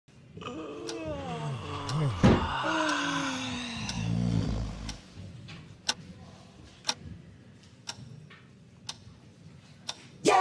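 Sliding, pitched electronic-sounding tones that sweep up and down for about five seconds. Then single sharp ticks come about once a second, like a clock.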